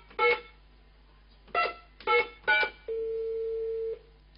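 Telephone keypad beeps as a number is dialled: four short beeps at uneven spacing, then a steady ringback tone for about a second as the call connects.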